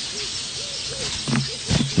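A bird calling faintly in the background with several short, soft hoots, and a low murmur of voice near the end.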